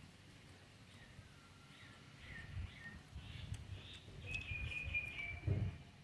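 Small birds chirping in short, high calls from about two seconds in, over a run of low muffled thuds, the loudest of them near the end.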